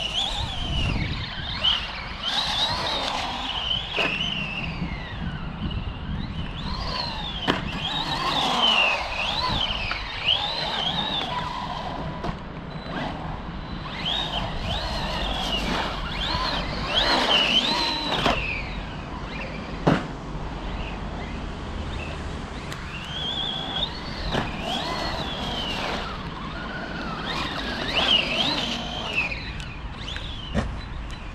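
Arrma Kraton 4S RC monster truck's brushless motor whining up and down in pitch as the throttle is worked in bursts, with a few sharp knocks scattered through, over a steady low rumble.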